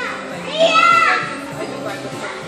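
A young child's high-pitched shout, about half a second in and lasting about half a second, over background music and the chatter of other children playing.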